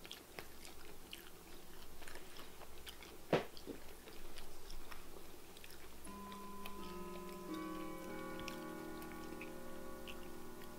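Close-up chewing and biting of crispy fried shrimp, with small crunchy clicks and one sharper click a little over three seconds in. From about six seconds in, soft sustained notes of background music play underneath.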